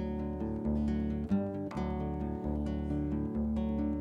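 Acoustic guitar strumming chords in a steady rhythm, with no singing.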